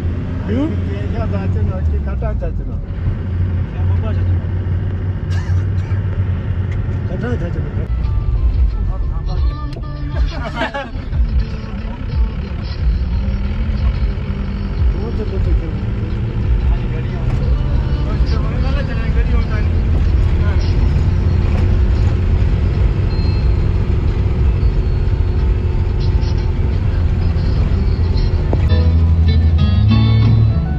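Steady low rumble of a vehicle's engine and tyres heard from inside the cabin while driving an unpaved gravel road, with voices and some music over it.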